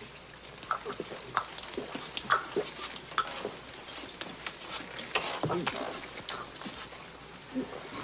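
A man gulping and slurping water greedily from a metal pan held to his mouth, with irregular splashing and dripping as the water spills over his face.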